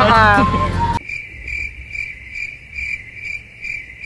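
Cricket chirping, a steady high chirp repeating evenly about three times a second. It comes in abruptly after a brief word over music and plays alone, the stock 'crickets' sound effect for an awkward silence.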